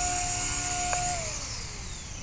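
Blade 180 CFX micro RC helicopter's 3S 5800kv brushless motor and rotor whining steadily on the ground, then spooling down with a falling pitch from about a second in. A single short click comes just before the wind-down.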